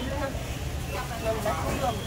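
Voices of shoppers and vendors talking in a busy market, over a steady low rumble.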